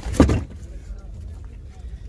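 A carpet liner being pulled back by hand, with one sharp rustle and thump about a quarter second in, over a steady low rumble.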